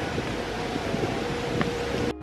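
Steady outdoor background noise with a faint, even hum running through it.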